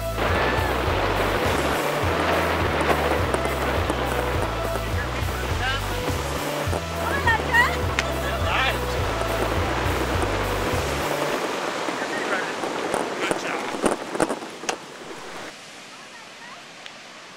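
Background music with a stepped bass line over the steady rush of surf and wind. Voices call out around the middle. The music stops about two-thirds of the way through, leaving surf and wind with a few sharp knocks.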